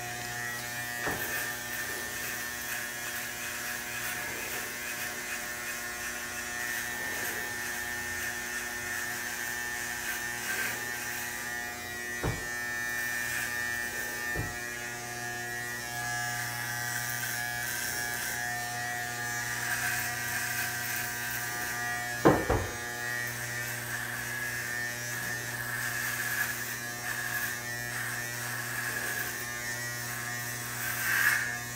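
Corded electric hair clippers buzzing steadily as they shave hair off a head, with a few sharp knocks, the loudest about two-thirds of the way through.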